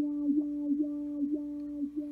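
A single held guitar note ringing steadily through the Empress ZOIA and Chase Bliss Condor, with a small dip in the tone about twice a second from the ZOIA's CV-driven LFO modulation.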